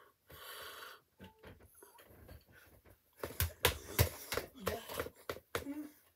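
Close handling noise: a run of irregular knocks and rustles from a ball being handled right against the microphone, starting about three seconds in. Breathing comes before it.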